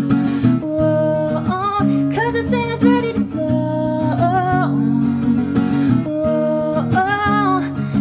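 A woman singing long held notes that slide in pitch, over steady acoustic guitar accompaniment.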